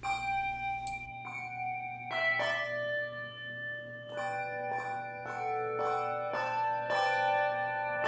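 Handbell choir ringing brass handbells in a melody: struck notes come about every half second, each ringing on and overlapping the next.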